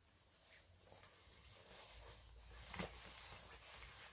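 Near silence, with a faint rustle of a thin costume's fabric being pulled over a child and one soft tick a little past the middle.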